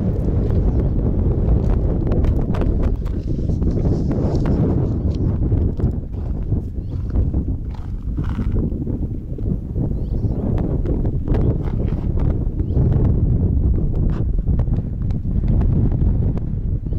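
Wind buffeting the camera microphone, with footsteps and scuffs on dry, stony ground.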